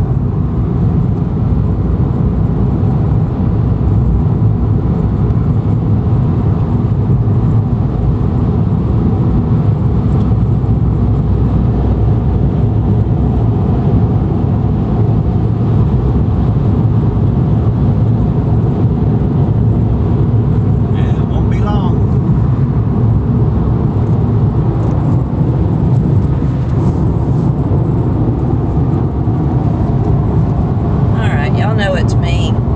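Steady road and engine noise inside a small Chevy Spark hatchback's cabin while driving on a highway.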